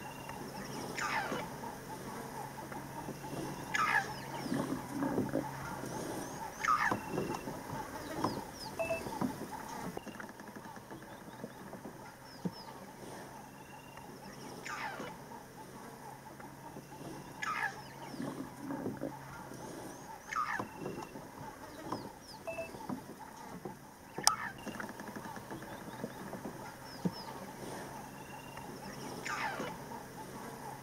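A bird calling: a short falling call repeated every few seconds, with small chirps between. A low steady hum comes and goes.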